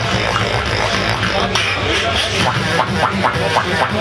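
Beatboxer performing into a microphone over a PA system: a deep bass line runs throughout, joined from about halfway in by quick, sharp vocal strokes, about five a second.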